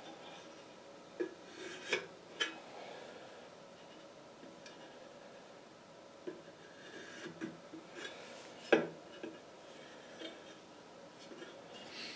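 Faint scraping and a few light metallic clicks of a compass and pencil being set against a metal wheel rim and stepped around its edge to mark off the radius, the loudest click about nine seconds in.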